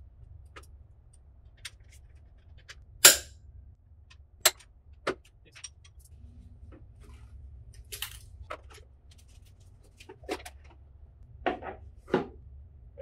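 Scattered metallic clinks and clanks of a wrench and Allen key on a dirt bike's bracket bolts and frame as the side bracket is unbolted, the sharpest clank about three seconds in, over a low steady hum.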